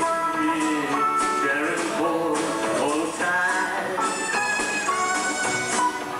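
Live country band playing a song, with guitars over a drum kit.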